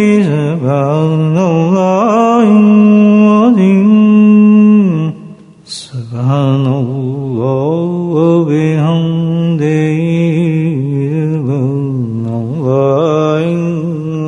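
A single male voice chanting devotional verses unaccompanied, in long held and ornamented notes. The voice breaks off briefly about five seconds in, then carries on at a lower pitch.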